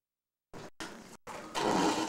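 Dead silence for about half a second, then a home-video tape recording cutting back in with choppy bursts of hiss broken by brief dropouts. A louder rush of noise comes near the end.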